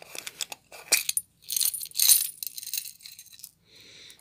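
Small glass, acrylic and metal beads rattling and clicking as they are tipped out of a small round plastic container onto a mat, in several short bursts.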